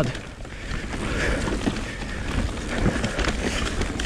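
Mountain bike rolling down a dirt singletrack: steady tyre noise on the loose dirt with wind buffeting the microphone and small knocks from the bike over the rough ground.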